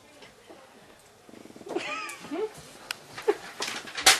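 Short wavering, meow-like vocal calls that bend up and down in pitch. They begin with a buzzing creak about a second in, and a few sharp clicks come near the end.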